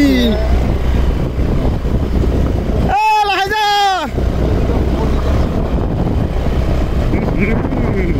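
Motorbike running on the move, with wind buffeting the microphone over a low, steady engine drone. About three seconds in, a person gives a brief drawn-out vocal call.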